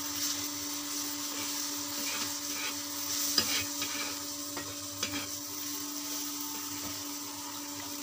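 Fish frying in oil in a pan over a wood fire, sizzling steadily, with a few light clicks about three and five seconds in.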